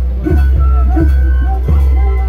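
Andean rural carnival music: a drum struck in an even beat, about one stroke every 0.7 s, under singing voices and a high held melodic note.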